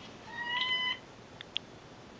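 A tabby cat meowing once, a single fairly level call lasting under a second, followed by two faint clicks.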